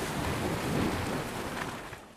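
A rushing swell of noise with a deep low end. It builds to its loudest about a second in and then fades away near the end.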